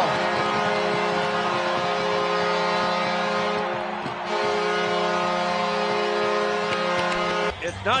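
Arena goal horn blaring for a home-team goal in one long blast, over crowd cheering. It dips briefly about halfway and cuts off near the end.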